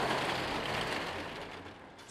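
Metal roll-up security shutter being lowered over a storefront, a continuous rattle of its slats that dies away near the end.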